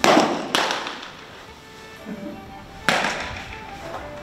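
Baseballs smacking into leather catcher's mitts in an enclosed bullpen, three sharp pops that ring off the walls: one at the start, another about half a second later, and a third just before three seconds in.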